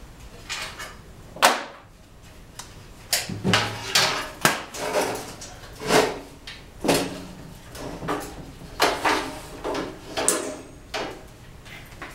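A metal equipment rack frame being tilted and walked across the floor: a series of irregular knocks, clanks and scrapes, the sharpest clank about a second and a half in.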